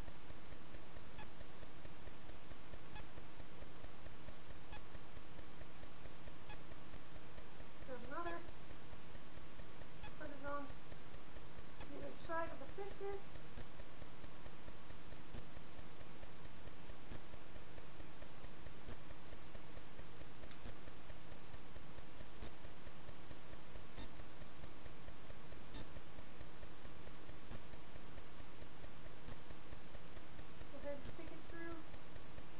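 Steady room tone: an even hiss with a low hum and faint, evenly spaced ticks. A few brief murmured voice sounds come about eight to thirteen seconds in.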